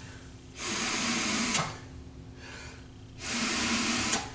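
Two rescue breaths blown through a CPR face mask into a training manikin: each a rush of breath about a second long, the first starting just over half a second in and the second about three seconds in.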